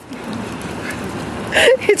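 Hot spring water from a fountain spout splashing steadily onto stone, with a woman's laugh breaking in near the end.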